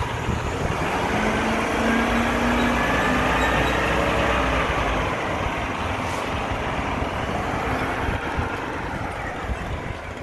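Diesel engine of a rear-loader garbage truck driving past close by. It grows loudest in the first half and fades toward the end as the truck pulls away up the street.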